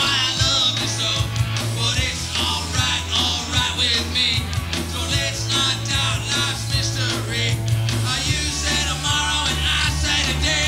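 A live rock band playing a song, heard from a raw master-cassette recording of the gig.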